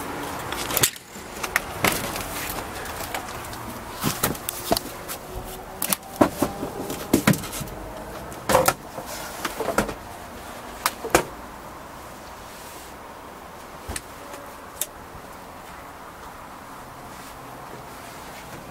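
Scattered knocks and clicks of a Chinook motorhome's entry door being opened and someone climbing inside, over about the first eleven seconds. After that comes a quieter, steady room tone inside the camper, with a couple of faint taps.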